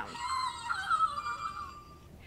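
Fingerlings Baby Unicorn electronic finger toy giving a high-pitched, warbling sound from its small speaker as it reacts to a clap, fading out near the end.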